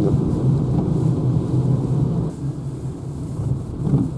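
Low, steady road and tyre rumble inside the cabin of a Renault Zoe electric car on a wet road, with no engine sound. It eases in the second half as the car slows down.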